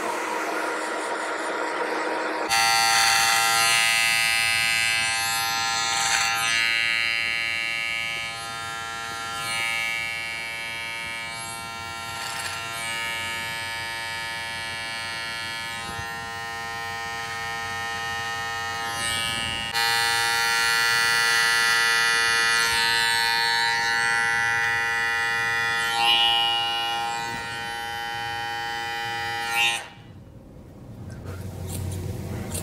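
Cordless hair clippers running with a steady motor hum as they cut short hair, the tone shifting as the blades move through the hair. The clipper sound steps up louder about two seconds in and changes again partway through.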